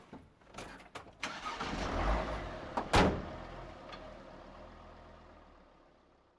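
A few clicks, then a delivery van's engine starting and running. About three seconds in the driver's door slams shut, the loudest sound, and the running engine then fades away.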